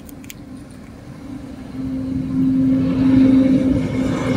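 A motor vehicle driving past, its engine hum and tyre noise swelling from about two seconds in to a peak near the end.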